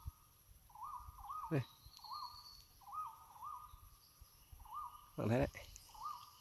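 A bird calling repeatedly in the forest: faint, short arched whistled notes, a few a second in loose runs.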